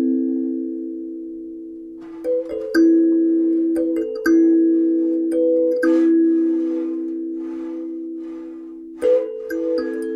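Sansula, a kalimba with its metal tines mounted on a drum-head membrane in a round wooden frame, being plucked a few notes at a time. Each note rings on and slowly fades, with a lull about two seconds long at the start, a long stretch of ringing in the middle, and new plucks near the end.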